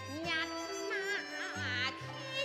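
Cantonese opera singing: a high voice holding and bending notes with wide vibrato, over a steady instrumental accompaniment.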